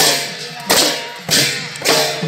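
Barrel drums and brass hand cymbals played together in a steady procession beat, about three strokes in the two seconds, each cymbal clash ringing on after the drum hit.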